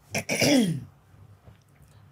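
A person clearing their throat once: a short rasp that ends in a hum falling in pitch, within the first second.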